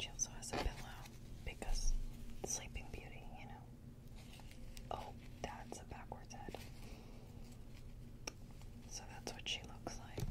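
Soft whispering close to the microphone, mixed with scattered small clicks and taps from a small plastic Happy Meal Barbie doll being handled and turned.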